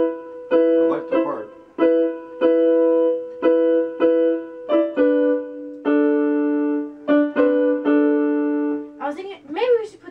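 Digital piano playing a repeated chord pattern, each chord struck sharply and left to decay, about two a second. About halfway through it shifts to a lower chord. A voice comes in over the last second.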